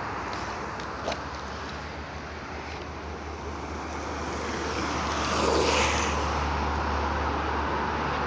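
Longboard wheels rolling over asphalt as a crouching rider passes close by, the rolling noise swelling to its loudest a little past halfway and then easing off, over a steady low rumble.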